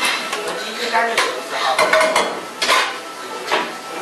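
Metal kitchenware clattering and clinking: a run of sharp knocks and clinks, some ringing briefly, over steady kitchen background noise.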